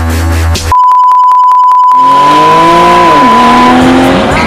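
Electronic music breaks off under a loud, steady high-pitched beep that holds for about three seconds. Beneath the beep comes a rapid ringing at first, then a cartoon car sound effect whose pitch falls.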